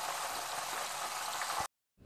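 Hot rapeseed oil bubbling and sizzling in a frying pan, an even steady hiss that cuts off suddenly shortly before the end.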